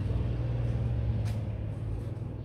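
A road vehicle's engine running, a low steady drone that eases off near the end, with one brief click partway through.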